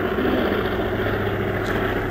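A steady low mechanical hum, like a motor running.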